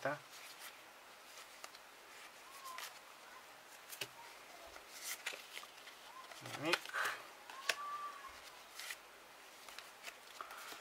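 Trading cards being slid and flipped one by one in gloved hands: faint rustling with a few soft clicks of card edges.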